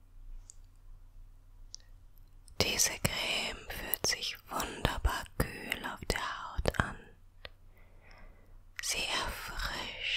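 A woman whispering softly in two stretches, one starting about two and a half seconds in and a shorter one near the end, with small clicks among the whispers.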